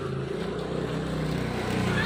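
A motor scooter's engine running steadily and getting a little louder, its pitch edging slightly upward.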